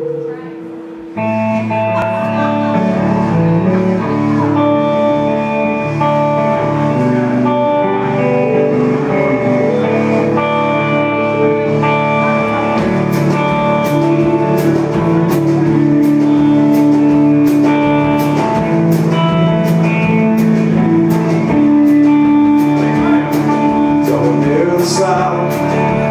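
Live band instrumental intro, loud: electric guitars and bass start about a second in, and drum and cymbal hits join about halfway through.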